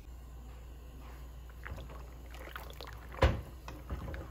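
Wooden spoon stirring penne in a pot of boiling water: water sloshing with light clicks of the spoon, and one sharp knock of the spoon against the pot a little after three seconds in.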